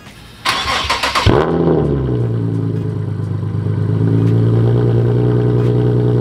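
Nissan 370Z's 3.7-litre V6 being started: a short burst of cranking, the engine catches with a quick rev about a second in, then settles into a steady idle.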